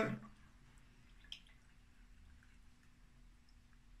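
Very faint drips of freshly squeezed lime juice falling from a hand-held citrus press into a jigger, with one small click a little over a second in.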